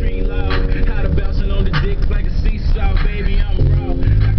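The low rumble of a car driving, heard from inside the cabin, under music with held chord tones and a voice from the car stereo.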